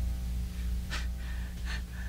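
A low sustained music bed under a pause in dialogue, with a short breath or gasp from an actor about a second in and another soft one near the end.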